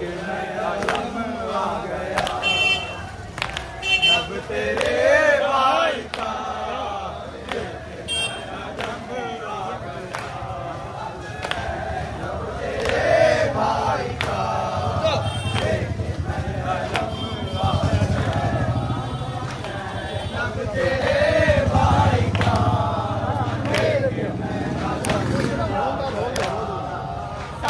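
A crowd of men chanting a mourning lament (noha) together, with sharp slaps about once a second from hands striking chests in matam.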